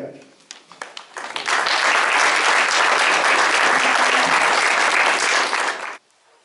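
Audience applauding: a few scattered claps build within about a second and a half into full, steady applause, which cuts off suddenly near the end.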